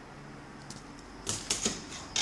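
A quick cluster of sharp plastic-and-metal clicks and rattles about a second and a quarter in, as a netbook keyboard with a metal backplate is handled and set down.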